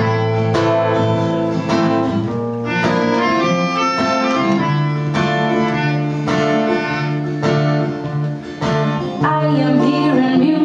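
Melodica playing sustained melody notes over a strummed acoustic guitar, a live duo performing a song.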